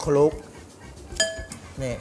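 A metal fork clinks once against a glass mixing bowl while noodles are tossed in it. The clink leaves a short ringing tone a little over a second in.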